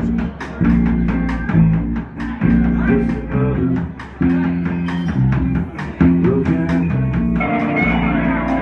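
Live rock band playing an instrumental passage on electric guitar, bass guitar and a Gretsch drum kit: a heavy low riff in stop-start phrases punctuated by drum hits. Near the end a brighter guitar layer fills in above the riff.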